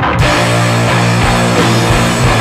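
Loud grunge/post-punk rock music with guitar. The full band comes in just after the start and fills the sound densely from the bass up to the highest frequencies.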